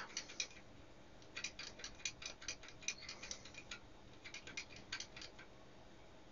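Front-panel push buttons of an Advantest R6142 programmable DC voltage/current generator being pressed over and over, faint sharp clicks about four or five a second in three runs with short pauses between. They step the calibration value up at the 1.6 mA calibration point.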